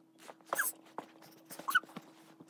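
Domestic cat giving short, rising chirps while it stalks and paws at a mechanical pencil: one about half a second in and another near the end, with a light tap in between.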